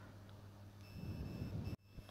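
Faint steady electrical hum with a thin high whine, the background noise of the recording, joined about halfway through by a faint low murmur. It cuts to dead silence shortly before the end.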